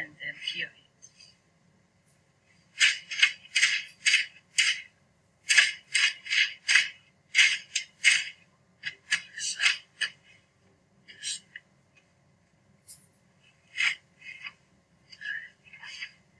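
PET heat-transfer film and a cotton t-shirt rustling and crinkling as they are handled: the film is peeled off the freshly pressed print and the shirt is shaken out. The sound comes in runs of short, quick strokes, one run in the middle and another shorter one near the end.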